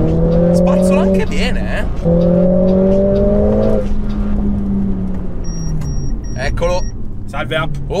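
Mercedes-AMG A45 S's turbocharged 2.0-litre four-cylinder pulling hard under full throttle on its stock exhaust, heard from inside the cabin. The note climbs, breaks for an upshift about a second in, climbs again, then falls away from about four seconds as the throttle comes off. Four short electronic beeps follow near the end.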